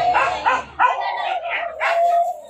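A dog barking repeatedly, about five sharp barks in quick succession, over a steady high tone.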